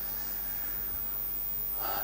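A pause in speech: steady room hiss with a man's breath noise on a close microphone, ending in a breath in just before he speaks.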